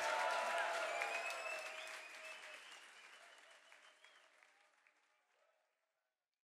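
Concert audience applauding, with a few cheers among the claps, fading away over about four seconds.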